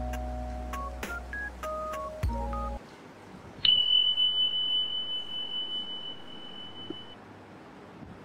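Background music of short plucked or mallet-like notes over a bass line, which stops about three seconds in. Soon after, a single high ringing tone starts suddenly, wavers, and fades away over about three seconds.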